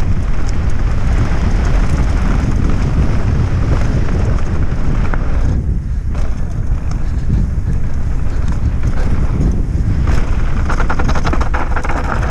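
Wind buffeting the microphone of a mountain bike's on-board camera during a fast downhill run, with the tyres rolling and crunching over gravel and dirt. From about ten seconds in, a dense rapid rattling as the bike runs over rough, stony ground.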